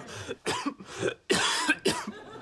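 A man with a cold coughing in a run of about four short coughs, the loudest and longest about one and a half seconds in.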